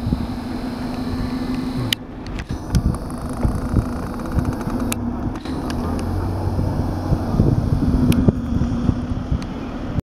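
Road traffic: vehicle engines idling and moving slowly, a steady low hum throughout, with wind rumbling on the microphone and a few sharp knocks.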